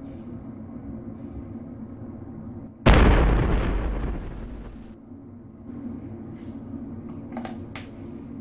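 An edited-in 'bang' sound effect: a sudden explosion-like boom about three seconds in that dies away over about two seconds, then cuts off abruptly.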